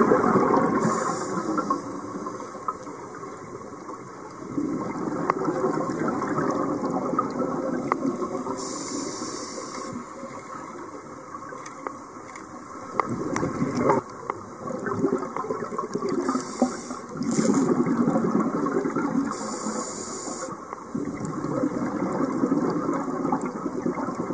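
Scuba breathing heard underwater: a regulator's short hiss on each inhale, followed by a longer low bubbling rumble of exhaled air, repeating several times with occasional light clicks.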